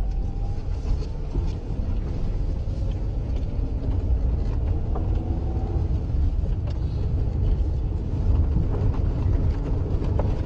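Steady low rumble of a road vehicle on the move, heard from inside its cabin: engine and road noise, with a faint whine that rises and falls in pitch.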